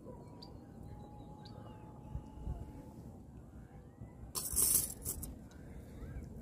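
A metal chain stringer holding two trout is lowered back into the lake. About four seconds in comes a short, loud, noisy burst of rattling and splashing, followed by a few light clinks. A faint steady tone can be heard during the first half.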